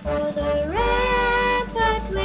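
A girl singing a slow song solo, holding long notes and sliding up to a higher held note a little under a second in.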